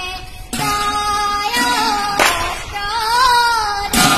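A boy singing an Assamese nam-prasanga devotional chant in a high voice, keeping time on a pair of large brass hand cymbals that clash several times and ring between the sung phrases.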